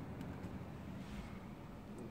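Quiet low background rumble with a couple of faint clicks as the phone is moved around.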